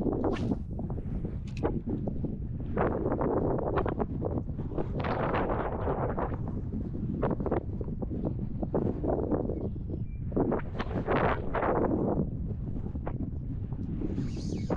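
Strong wind buffeting the microphone, with a steady low rumble that surges in irregular gusts.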